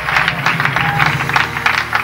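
A church congregation clapping their hands, many claps together, with music playing underneath.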